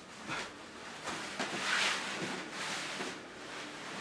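Soft rustling of clothing and bedding as a person shifts and changes on a bed.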